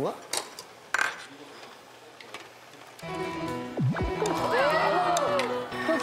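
A few sharp clinks of plates and utensils in the first half. About halfway through, background music comes in, with a sound effect that swoops down and back up in pitch.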